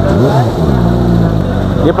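A man's voice in a drawn-out hesitation sound, over a steady low rumble; a word follows near the end.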